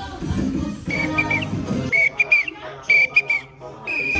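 A shrill whistle blown in short bursts, each ending in a quick bend of pitch, about once a second, over upbeat Latin-style background music whose bass drops out for the second half.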